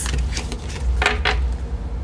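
Oracle cards being gathered off a cloth-covered table and stacked, with a few brief papery scrapes and taps about a second in, over a steady low hum.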